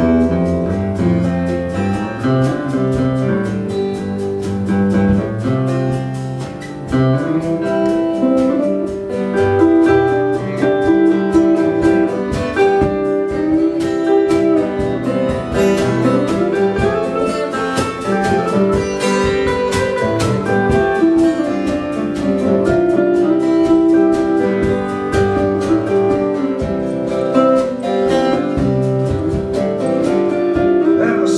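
Live band playing an instrumental passage: electric lead guitar over a strummed acoustic guitar, with drums keeping a steady beat and no singing.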